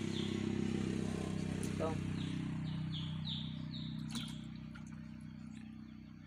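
A bird calling in quick runs of short falling notes, about three or four a second, at the start and again from about two to four seconds in, over a steady low hum.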